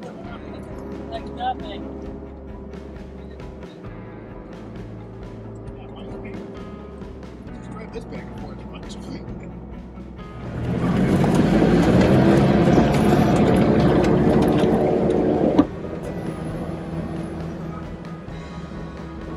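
Sherp ATV's diesel engine running in low gear, heard from inside the cabin, with scattered scrapes and knocks of brush against the vehicle. About ten seconds in the engine note rises and gets much louder as it pushes through the trees, then the sound cuts off abruptly a few seconds later.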